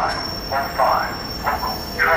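Metro-North electric commuter train running on the track, with a steady high-pitched whine, and indistinct voices over it.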